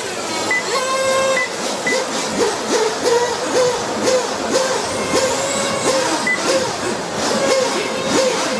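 Radio-controlled racing motorcycles' motors whining. The pitch dips sharply and climbs back again and again as the bikes lift off and open up through the corners.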